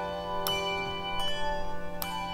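A handbell choir playing: brass handbells rung in turn, each new note struck over the still-ringing earlier ones, with fresh strikes about half a second in and again just past a second.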